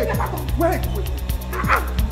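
Short shouted cries and exclamations from several people, over background music with a steady low bass.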